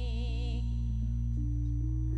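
Live campursari music played through a sound system: a singer's held, wavering note fades out about half a second in, while steady sustained instrumental notes change pitch over a loud, constant low bass.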